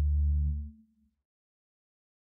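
Isolated electric bass holding a last low note of the bass line, which fades out and stops less than a second in.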